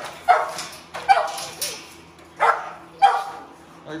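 Pit bulls in wire kennels barking: a string of short, sharp barks, about four loud ones with a couple of softer ones between, unevenly spaced. It is excited barking at feeding time.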